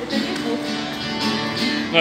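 Music playing over a loudspeaker, with sustained, steady notes.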